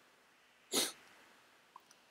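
A single short, sharp breath from a person close to the microphone, about three-quarters of a second in, over quiet room tone.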